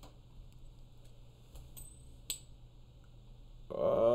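Quiet room tone with a few faint clicks; the sharpest comes a little past halfway and rings briefly.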